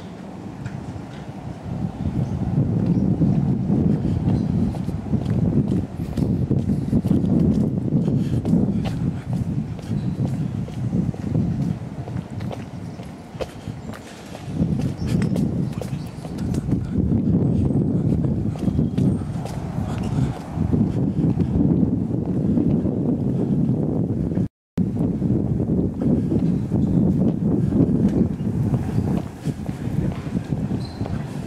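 Outdoor street sound on a walk over cobblestones: a loud low rumble that swells and fades every couple of seconds, with light clicking steps over it. The sound cuts out completely for a moment a little before the end.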